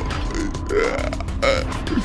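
A man's guttural vocal sound, rising and then falling in pitch about a second in, over eerie background music.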